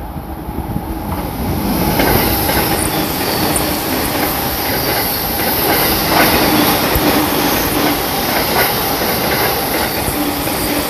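JR Tokaido Line electric commuter train passing through the station at speed without stopping. Its noise builds over the first two seconds into a steady rumble, with wheels clicking over rail joints throughout.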